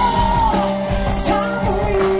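Live rock band: a woman singing lead over electric guitar, bass guitar and drums.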